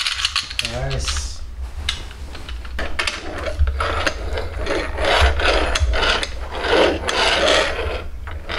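Small plastic toy cars pushed back and forth on a wooden shelf top, their geared motors whirring in rough, repeated strokes that grow busier from about three seconds in.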